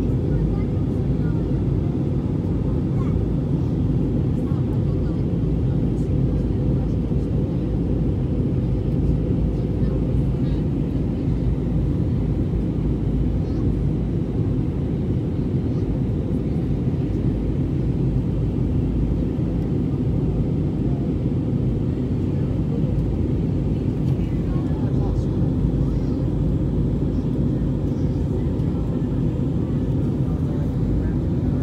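Steady low roar of an Airbus A320 in flight heard inside the cabin: engine and airflow noise that holds even throughout.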